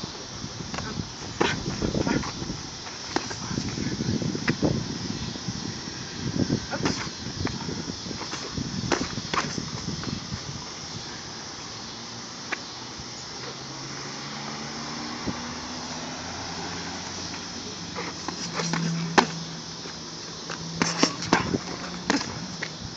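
Boxing gloves landing during sparring: irregular sharp smacks, many in the first ten seconds and a few more near the end, with low muffled noise between them.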